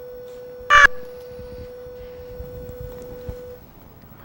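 A steady single-pitched hum cuts off suddenly near the end. About a second in, one short, loud, high squawk breaks over it.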